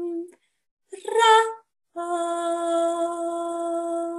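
A woman's meditative vocal toning: a long, steady held note that breaks off just after the start, a short voiced sound rising in pitch about a second in, then another long steady held note from about two seconds in.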